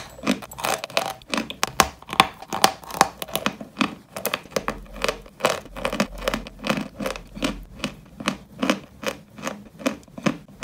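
Close-miked crunching as a dry, crumbly white dessert block is chewed, with crisp crackly crunches about three a second.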